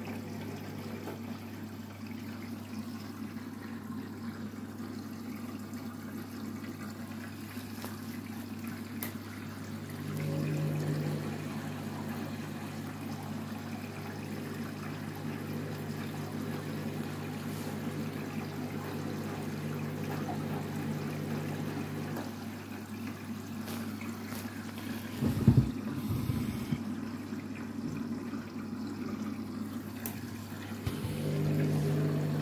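Candy front-loading washing machine rinsing a load of bedding: water sloshing as the drum tumbles the wet sheets, over a steady motor hum whose tone steps up for about twelve seconds in the middle. Near the end a few heavy thuds, the loudest sounds.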